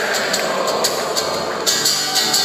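Live band music with a steady drumbeat, about two to three beats a second, under thick crowd noise from an audience singing along.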